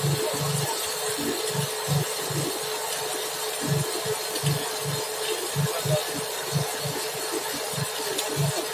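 Fibre-optic cable blowing machine running on compressed air: a steady hiss with a constant mid tone under it, and irregular low thuds.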